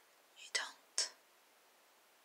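Two short breathy, whispered sounds from a woman, about half a second apart, hissy and without voiced pitch.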